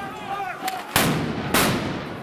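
Two loud bangs of military weapons fire, about half a second apart, each trailing off in an echo. They come from soldiers firing on a street demonstration, where tear gas, rubber-coated bullets and live rounds were all used.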